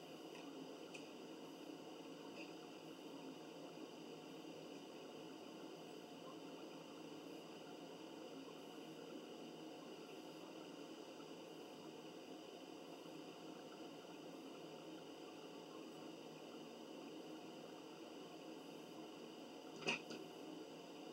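Near silence: steady room tone and hiss, with a few faint clicks about a second in and a sharper click at the very end.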